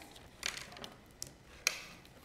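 Faint rustling of white card stock being handled and folded over along a score line, with a couple of short clicks in the second half.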